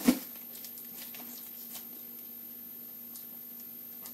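A short thump at the start, then faint, scattered crinkling and ticking of plastic bubble wrap as a small metal paint can is pulled out of it and handled.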